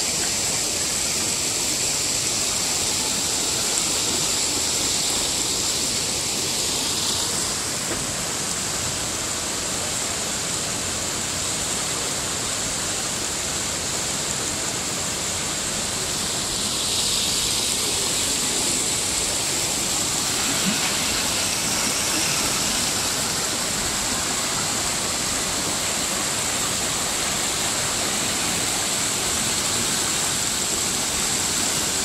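Shallow river rushing over rock ledges and small rapids: a steady wash of flowing water.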